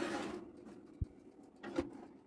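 An aluminium cooking pot being set onto a countertop oven's wire rack: a brief scrape at the start, a soft thump about a second in, and a short knock near the end as a steel mug is placed beside it.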